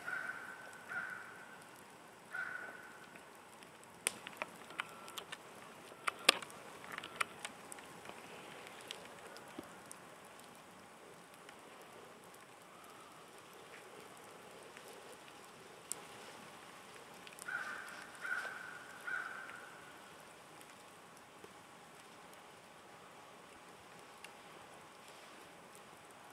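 Wood campfire crackling faintly in a metal fire ring, with scattered sharp pops, most of them in the first third. Two short runs of repeated calls, like distant bird calls, come near the start and again about eighteen seconds in.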